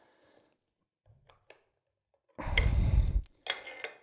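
A few faint metallic ticks, then, about two and a half seconds in, a loud metallic scraping rush lasting under a second, with a smaller scrape after it: the PTRS-41's long recoil spring is pulled out of the receiver, its coils rubbing along the metal.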